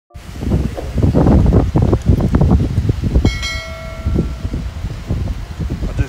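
Gusty wind buffeting a phone's microphone, with handling rumble, in an outdoor clip. About three seconds in, a brief ringing tone sounds and fades over about a second.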